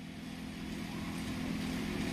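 Steady low hum with background noise picked up by a lectern microphone in a hall, slowly growing louder.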